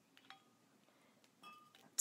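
Near silence broken by two faint metallic clinks, one about a third of a second in and one about a second and a half in, from a double-hinged waiter's corkscrew as its lever is handled on the corked bottle.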